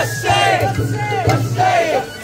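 A group of festival dancers shouting rhythmic chant calls in unison, the calls rising and falling in quick succession, with a few sharp beats among them.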